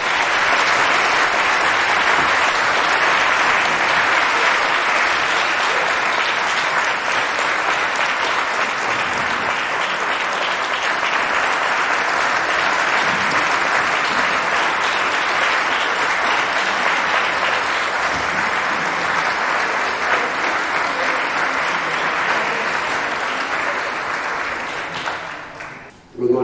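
A large audience clapping steadily, dying away near the end.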